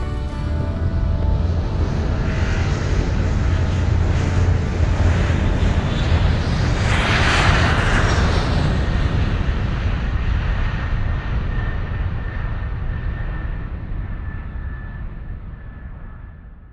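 An airplane flying past: a rushing engine noise that builds to a peak about halfway through and then fades away, with a faint high engine whine lingering as it recedes.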